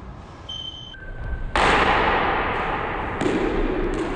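Longsword sparring: a couple of short, high squeaks of shoes on the wooden floor, then about a second and a half in a sudden loud hit from the sword exchange that echoes off the bare walls of the court, and a second, smaller hit near the end.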